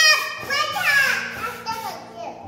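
A young child's high-pitched voice, talking and exclaiming in short bursts, loudest at the very start and again about a second in.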